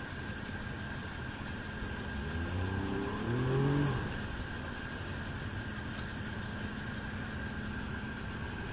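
Pontoon boat's outboard motor running, throttled up for a couple of seconds about halfway through with a rising pitch as it pushes the boat up onto its trailer, then easing back.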